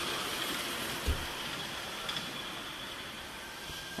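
A miniature railway train running past, heard as a steady noise that slowly fades, with a single low knock about a second in.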